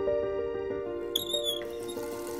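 Soft, slow background music with sustained pitched notes. About a second in, a brief burst of high, squeaky chirping notes from a small animal sounds over it, and a faint hiss comes in near the end.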